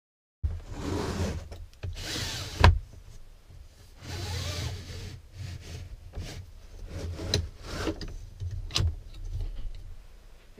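Pleated blind and insect screen of a motorhome window being slid along its frame by hand: rubbing swishes, a sharp click about two and a half seconds in (the loudest sound), and lighter clicks later as the bar is moved.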